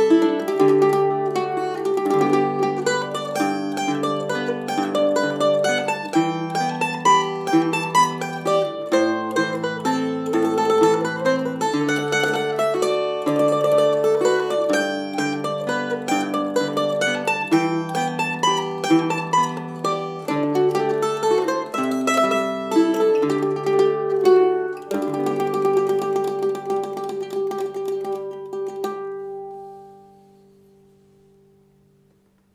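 Mandolin (a Mid-Missouri M-0W) playing the melody of a slow Irish waltz, with a vintage tenor guitar holding the chords underneath. Near the close the mandolin turns to tremolo on the last long notes, and the tune ends just before the end with a final note left ringing and fading.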